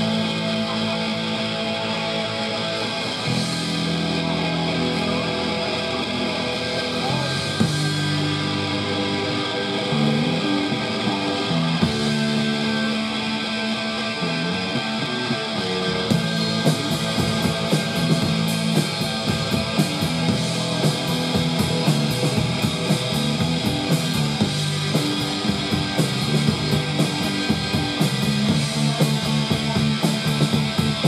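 Live punk band playing an instrumental passage on electric guitar, bass guitar and drum kit, with no vocals. About halfway through, the drums and cymbals come in harder with fast, steady hits.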